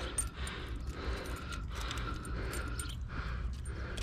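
Scattered small metallic clicks and rattles from a hook-removal tool working a hook lodged deep in a wels catfish's throat, over a low steady rumble.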